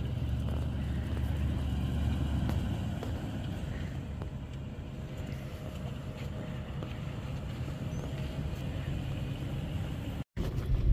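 2003 Toyota Land Cruiser's 4.7-litre V8 running as the SUV creeps across soft sand, heard from outside the vehicle as a steady low rumble that eases a little about two and a half seconds in.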